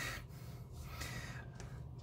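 A faint breath out just after laughing, near the start, then quiet room tone.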